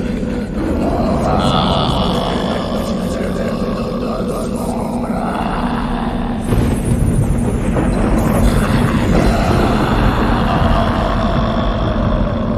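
The opening of a black metal album: a steady low drone with growling, voice-like sounds over it. A louder, noisier layer comes in about halfway through.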